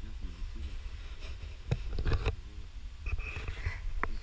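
Wind rumbling on the camera microphone, with faint voices at the start and a few sharp knocks about halfway through.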